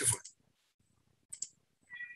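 Two quick, sharp clicks close together about a second and a half in.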